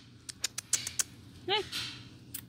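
A person making a quick series of sharp clicks, about six in the first second, to catch a puppy's attention.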